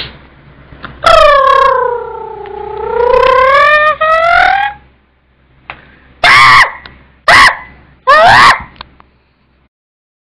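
Beatboxer's mouth-made sound effects: a long pitched tone of about four seconds that dips low and climbs back up like a siren, then three short, loud vocal hits about a second apart.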